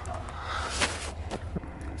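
Steady low hum and even rushing noise inside a moving cable-car cabin, with a few faint clicks about a second in.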